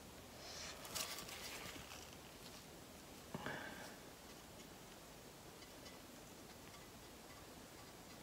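Very quiet room with faint rustling of gloved hands handling a paint-covered aluminum disc, and one soft knock a little over three seconds in as the disc is set down flat on the plastic tub beneath it.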